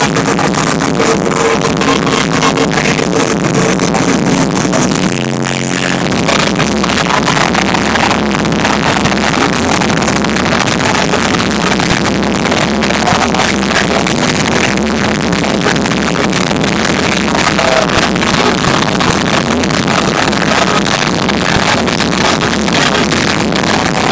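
Loud live concert music with an electronic, beat-driven sound coming over a large venue PA, dense and distorted as heard from inside the crowd.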